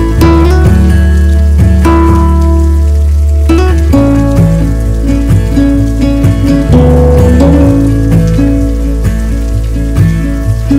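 Background music with sustained low notes that change every second or two, over a steady sound of rain falling.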